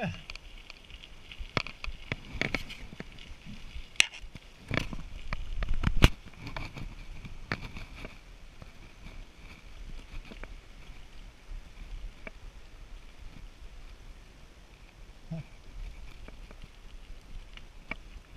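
Bicycle riding along a trail, heard from the handlebars: a low rumble of tyres and wind on the microphone, with scattered clicks and knocks from the bike rattling over bumps, the sharpest about four and six seconds in.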